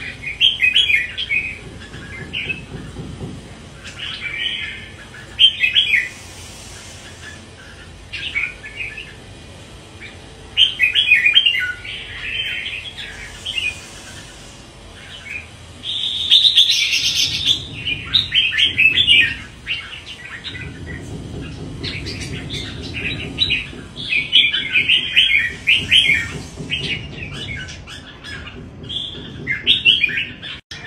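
Caged red-whiskered bulbul singing, short loud chattering phrases repeated every few seconds.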